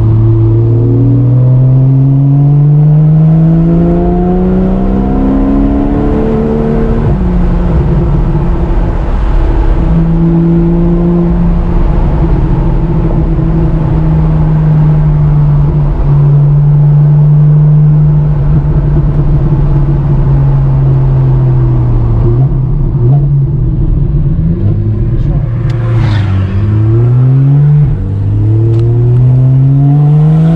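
2015 Porsche 911 Carrera 4S's naturally aspirated 3.8-litre flat-six heard from inside the cabin. It accelerates with a rising pitch for about seven seconds, drops in pitch at a gear change, and holds a steady cruise. Near the end the pitch falls and climbs again several times through further gear changes.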